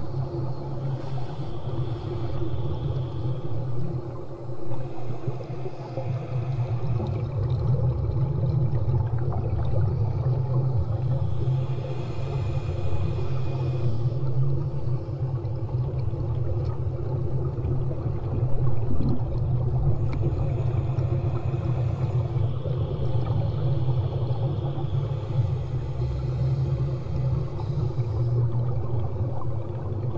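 Muffled underwater sound of a snorkeller: a steady low rumble, with a breath drawn or pushed through the snorkel every few seconds.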